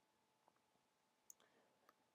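Near silence, with a few very faint computer mouse clicks.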